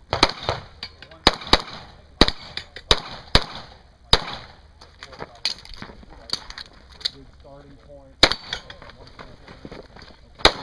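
Pistol shots fired in quick pairs and singles, sharp cracks at uneven spacing, with short pauses as the shooter moves between shooting positions.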